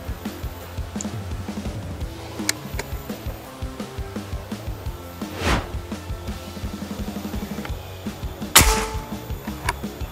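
Background music with a beat, and a single shot from a PCP Morgan Classic pre-charged pneumatic air rifle near the end, the loudest sound, followed by a brief ringing tone. A rising whoosh sounds about halfway through.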